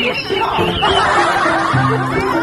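Giggling laughter over background music.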